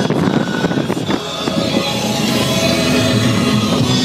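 Wind and road noise inside a car driving with its roof open, with music playing over it.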